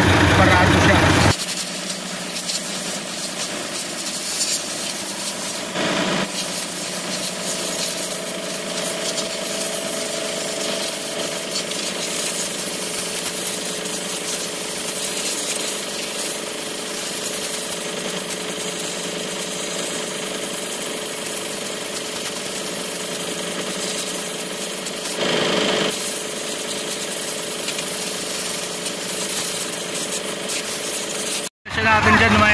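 Compressed air hissing steadily from an air blow gun as it blows dust out of a truck's air-conditioning cabin filter, with two brief louder blasts, about six seconds in and near the end.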